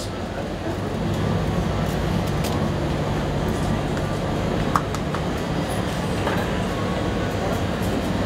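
Steady low mechanical hum of shop machinery, with a few light clicks, one sharper a little after halfway.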